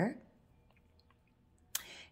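A woman's speech trails off, followed by a near-silent pause with a few faint, tiny ticks as copper weaving wire is handled in the fingers, and a short hiss near the end.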